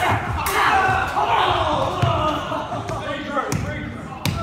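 Several young male voices shouting and yelling over one another during a staged sword fight, with a couple of sharp knocks from the fight, one about half a second in and another near the end.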